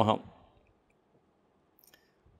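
The last syllable of a man's spoken invocation fades out in the first moment, followed by near silence with a faint short click near the end.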